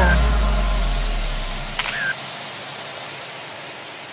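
The backing music ends on a low bass note that fades out. Just before the middle comes a single camera shutter click with a brief beep, and then only a soft hiss remains.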